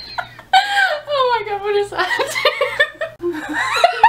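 Two women laughing hard, with a long high squeal that slides down in pitch about half a second in, then choppy bursts of laughter.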